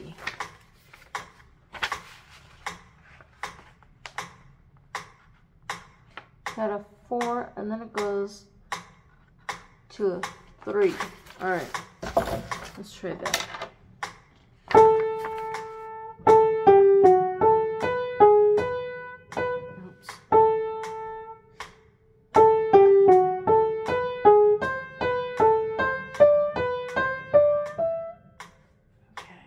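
Sheets of paper being handled, with scattered clicks and rustles. About halfway through, an upright piano starts playing a simple melody in two phrases, with a short break between them.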